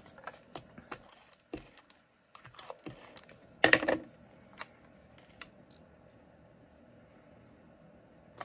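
Cardstock being handled and pressed onto a card front: scattered light paper clicks and rustles, with one louder brief rustle a little under four seconds in.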